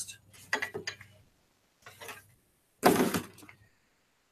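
Gloved hands rubbing baking powder and salt into a raw duck's skin in a metal sheet pan: a few short rubbing and scraping noises, the loudest about three seconds in.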